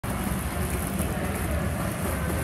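Continuous splashing of pool water from a swimmer's flutter kick, an even, steady rush of noise with no distinct strokes.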